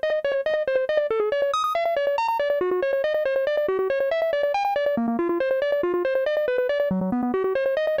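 A modular synthesizer sequence, a rapid, steady run of short pitched notes hopping between a few pitches, played through a Doepfer A-188-2 tapped BBD analog delay with the 3328-stage tap mixed in negatively, a setting meant to give a mild flanging.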